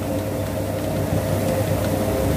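A puffed-rice (muri) roasting machine running: a steady mechanical hum with a low drone and a held tone, while rice is being fed in.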